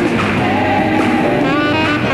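Live gospel music: a saxophone playing a wavering, vibrato-laden line over a gospel choir singing.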